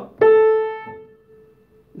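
An upright piano's A at 440 Hz (A4, called La3 in Spanish naming) is struck once, with a sharp attack about a quarter of a second in. Its bright upper overtones fade within about a second, while the fundamental rings on more faintly.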